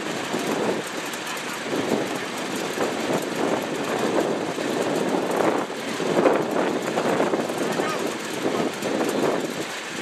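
Indistinct voices over a steady outdoor background noise, with no clear ball strikes standing out.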